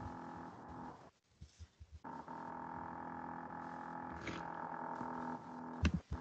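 A steady hum of fixed pitch with many overtones, picked up over a video call. It breaks off about a second in, returns a second later and fades shortly before a sharp click near the end.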